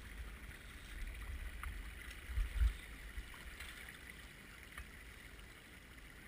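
Shallow water of a small upland burn moving and sloshing as people wade in it with nets, with dull low rumbles that are loudest about halfway through.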